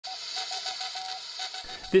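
Morse code from a Russian shortwave numbers station received on a software-defined radio: a single steady-pitched tone keyed on and off in short and long beeps over radio static.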